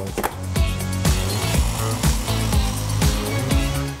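Kenwood food processor's mill attachment running, its motor grinding whole fennel seeds to a fine powder; it starts about half a second in and stops just before the end. Background music with a steady beat plays underneath.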